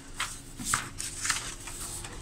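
Sheets of printer paper rustling as they are handled, four quick rustles about half a second apart.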